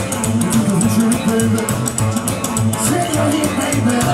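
Live band playing an instrumental passage: upright bass walking under electric guitar and a drum kit keeping a fast, steady beat, with harmonica played into a hand-held microphone.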